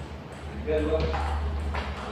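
Table tennis ball being hit back and forth in a rally, sharp clicks of the ball off rackets and table, the first about a second in and another near the end.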